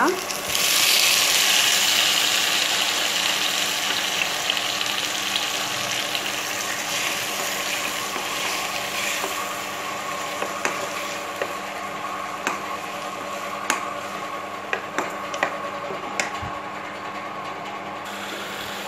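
Chopped onions and tomatoes sizzling in hot oil in a wok. The sizzle jumps up as the tomatoes go in, about half a second in, then slowly dies down. Occasional clicks of stirring against the pan are heard over a faint steady hum.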